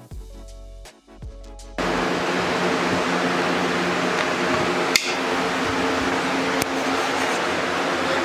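Background music for the first couple of seconds, then an abrupt cut to the steady, loud whirring hum of woodshop machinery running, with one sharp tick about five seconds in.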